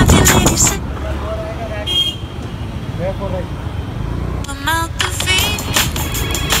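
Background music that drops out about a second in and comes back near the end; in the gap, the low rumble of a scooter ride in traffic with a short horn-like toot and brief pitched vocal sounds.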